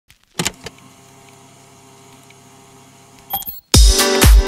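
Opening of an indie bedroom-pop song: a couple of clicks, a faint steady hum with held low tones, then more clicks. Near the end a beat comes in with a deep kick drum about twice a second.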